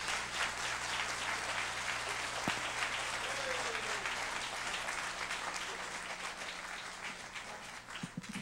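A large audience applauding, the clapping thinning and dying away over the last two seconds or so.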